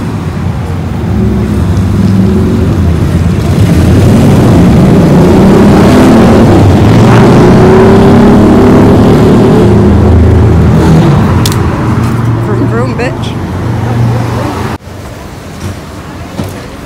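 Loud city street traffic: a low rumble of vehicle engines that swells through the middle and cuts off suddenly near the end, leaving quieter background sound.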